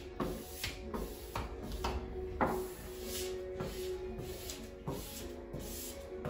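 Soft background music, with irregular short rubbing strokes of a squeegee sweeping over wet window film to push out the bubbles.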